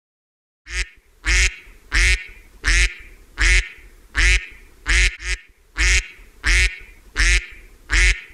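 Duck quacking: a steady run of about a dozen loud quacks, evenly spaced about three-quarters of a second apart, starting just under a second in.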